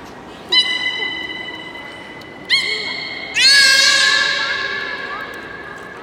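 Beluga whale, head raised above the water with its mouth open, making three high-pitched calls. Each call starts abruptly; the third is the longest, about two seconds, and wavers in pitch as it fades.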